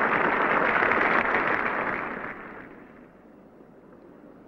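Cricket crowd applauding, dying away about halfway through.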